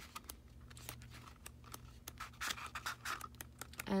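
Paper pages of an album photobook being flipped by hand: a run of quiet rustles and small ticks as the pages turn.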